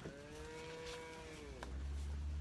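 Cattle mooing: a drawn-out moo whose pitch drops at the end, running into a deeper, lower moo that begins about a second and a half in.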